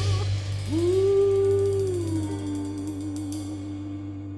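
Live piano, bass and drums trio ending a song: a woman's voice holds one long sung note that steps down in pitch and finishes in vibrato over a held bass note, the whole band fading out.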